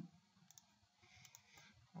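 Near silence with a few faint computer-mouse clicks.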